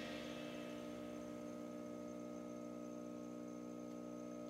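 A steady drone of several held tones, with no beat, in a break in the background music.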